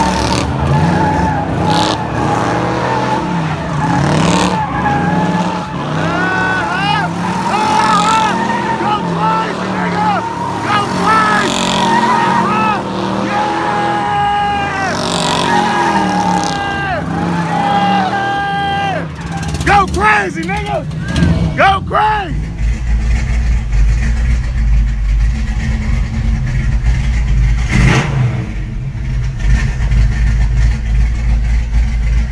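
Chevrolet Monte Carlo SS doing donuts: the tyres squeal in long wavering pitches over the revving engine as it smokes the rear tyres. About two-thirds of the way through it cuts to a steady deep rumble heard inside the car.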